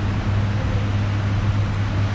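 Steady low hum with a faint hiss of room noise.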